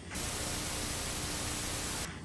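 A steady, even hiss like static, with a faint steady hum underneath, starting and stopping abruptly.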